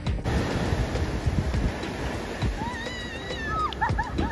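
Surf washing up a sandy beach, heard as a steady rushing noise with wind buffeting the microphone. In the last second and a half come a few short, high, wavering calls.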